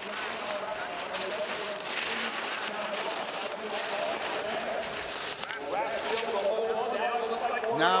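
Alpine skis carving and scraping through parallel slalom turns on slick, hard-packed snow, a run of short hissing scrapes. Distant voices of spectators or the course announcer come up near the end.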